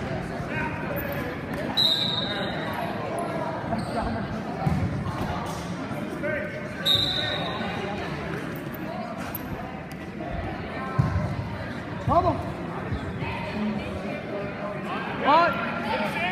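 Wrestling shoes squeaking and scuffing on the mat, with a few short high squeaks and some sharp thumps, as two wrestlers grapple in a standing tie-up. Spectators' and coaches' voices carry on underneath in the reverberant gym.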